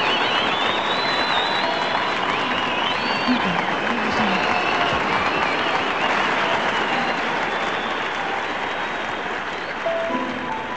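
Concert audience applauding, with high whistles over the clapping in the first few seconds; the applause slowly dies down toward the end.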